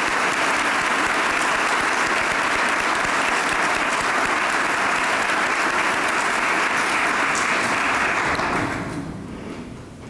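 An audience applauding steadily, dying away about nine seconds in.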